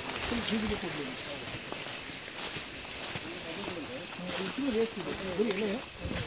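People talking, with a steady hiss behind the voices.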